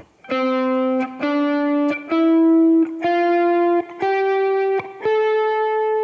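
Electric guitar playing six single picked notes, about one a second, climbing step by step up the major scale from the root to the sixth. This is the whole-step finger pattern at frets 10, 12 and 14, played on two neighbouring strings.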